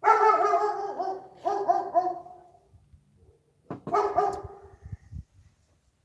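German Shepherd barking next door: a run of barks, then a second burst of barks about four seconds in, with a few low knocks near the end.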